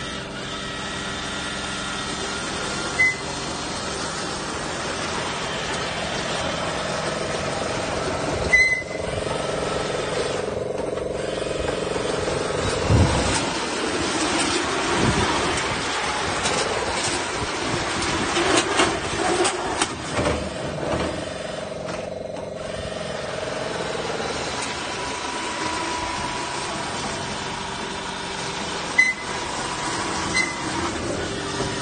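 A homemade tracked mech-style vehicle running, its motor a steady mechanical drone whose pitch bends up and down in the middle, with the hiss of water jets from its arm-mounted water guns. A few brief sharp knocks stand out, one near the start, others around nine seconds, thirteen seconds and near the end.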